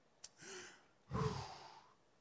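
A man breathing close to a microphone: a small click, a short breath, then a louder sigh-like exhale about a second in.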